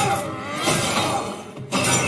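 Film battle soundtrack: music under heavy crashing impact and debris effects, with three loud crashes about two thirds of a second apart.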